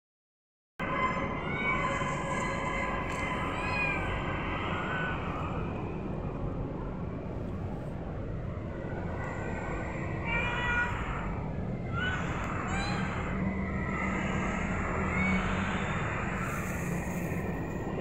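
A few short, scattered cat meows from domestic cats over a steady low background hum.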